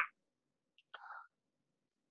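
Near silence, broken about a second in by a faint tick and a brief soft breath from a person.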